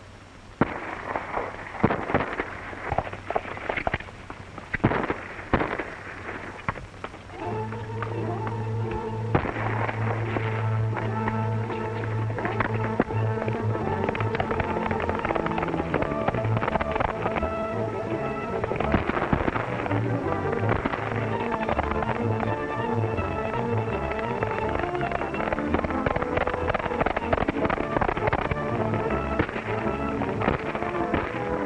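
A volley of gunshots, sharp cracks spread over the first seven seconds or so, then a dramatic film score comes in and plays on steadily.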